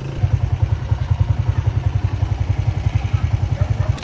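Small single-cylinder motorcycle engine running close by, a steady rapid low putter of about ten beats a second.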